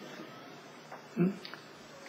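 A pause in a talk: low, steady room hiss, broken about a second in by one short 'hmm?' from a man.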